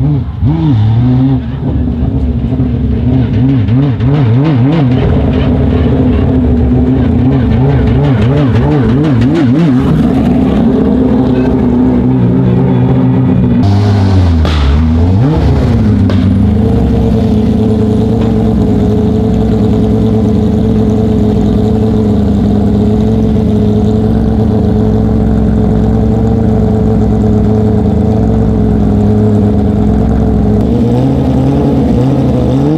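Porsche 911 (997) GT3 rally car's flat-six engine running at a loud, lumpy idle, its pitch wavering for the first several seconds. About halfway through the revs dip briefly and recover, then the engine holds a steady idle.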